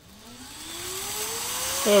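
Kite Mini Air air-cushion packaging machine starting up: its blower spins up with a steadily rising whine over a growing rush of air as it begins inflating the film into air pillows.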